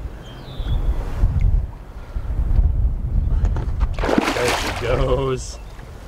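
A released muskellunge splashing at the surface as it bolts off, one sharp splash about four seconds in, followed by a short voice exclamation.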